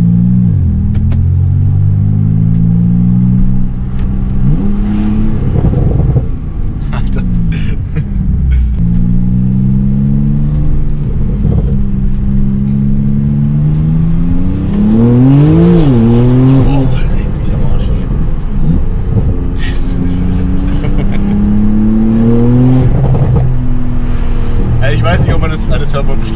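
Porsche 991.2 Turbo S twin-turbo flat-six with a catless Techart exhaust, heard from inside the cabin as the car pulls away and accelerates in the low gears. The engine note climbs and falls several times; the longest climb comes about halfway through and ends in a sudden drop.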